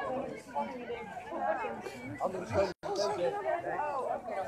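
Overlapping chatter of several people talking at once, with a brief dropout in the recording about three seconds in.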